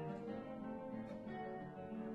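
Two classical guitars playing a duo piece together, plucked notes ringing over one another.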